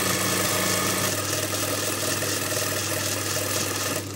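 Sewing machine running steadily as it stitches a trouser leg seam, its motor humming, then stopping right at the end.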